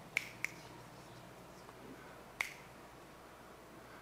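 Three sharp finger snaps: two in quick succession near the start and a third about two seconds later, over a quiet room.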